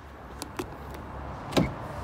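Porsche Cayenne front door being opened: two light clicks from the handle, then a loud clunk about one and a half seconds in as the latch lets go, and a second knock at the end as the door swings open.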